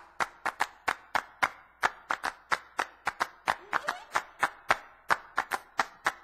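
Recorded hand claps at the start of a rock guitar instrumental, about three sharp claps a second in an uneven, syncopated rhythm, with faint instrument sound underneath.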